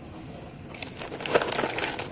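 A hand rummaging through frozen cauliflower florets in a plastic bowl: a dense run of small crackles and clicks as the icy pieces knock together, starting under a second in.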